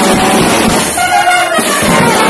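Banda brass bands playing together loudly: trumpets and trombones over drums and cymbals. About a second in the low end briefly thins out under held brass notes before the full band returns.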